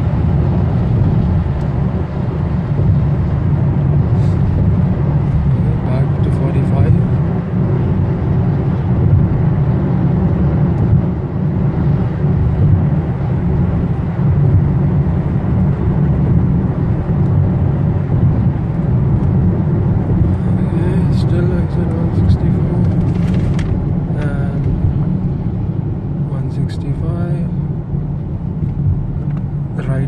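Steady road and engine noise heard inside a car's cabin at highway speed on wet pavement, a constant low rumble.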